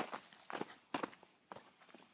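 Footsteps walking along a dirt forest trail strewn with dead leaves, at an even pace of about two steps a second.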